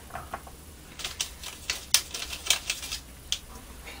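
Paintbrush tapping and scraping against the rim and sides of a small pot of PVA glue as it is loaded: an irregular run of light clicks starting about a second in.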